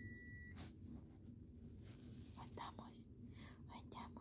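Near silence inside a car cabin: a faint, steady low rumble, with a thin high beep-like tone for the first half second and a few soft whispered sounds later on.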